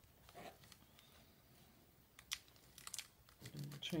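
Mirror contact paper crinkling as the covered cardboard box is handled, faint at first, then a few sharp crackles about two to three seconds in.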